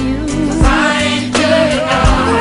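Recorded gospel song: a singer's wavering vocal line over held bass notes and a steady drum beat.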